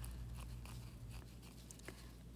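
Faint scratchy brushing with a few small clicks: an acrylic nail brush working wet glitter acrylic over a nail tip. A low steady hum runs underneath.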